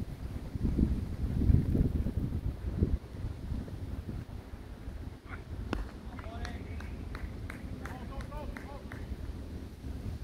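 Wind buffeting the microphone for the first few seconds, then a single crack of a cricket bat striking the ball about six seconds in, followed by players' calls and shouts.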